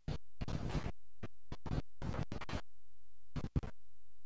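Hollyland Lark C1 wireless microphone signal breaking up at long range: choppy, scratchy fragments and clicks with brief dropouts to silence, as the transmitter loses line of sight to the receiver.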